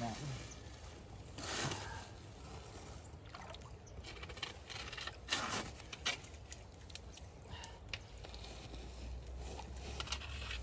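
Shallow water sloshing and splashing as hands reach in and pull at a trap chain holding a beaver, in two brief louder bursts about a second and a half in and about five seconds in, with scattered small knocks. A low rumble builds near the end.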